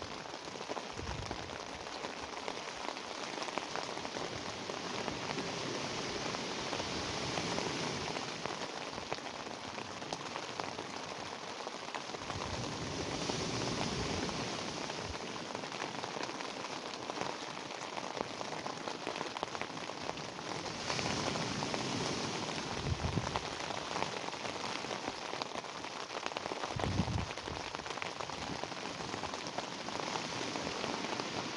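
Steady rain pattering on a fabric fishing shelter, with a few brief low thuds scattered through.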